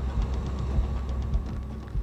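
A low, steady rumbling drone with faint fast ticking above it: an eerie background score under a dramatized ghost scene.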